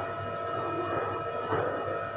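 A steady background hum made of several constant tones, with no distinct event standing out.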